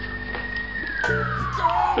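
An emergency vehicle's siren wailing. It holds a high note, then slides down in pitch over about the last second, with music playing faintly underneath.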